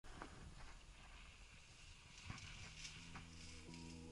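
Faint footsteps crunching in snow, a few soft steps. Background music with steady held notes fades in about halfway through.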